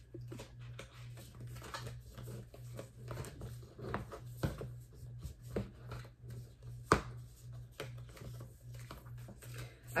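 Tarot cards and the pages of a small card guidebook being handled and flipped through: light papery rustles and soft clicks, with a sharper snap about seven seconds in. A steady low hum runs underneath.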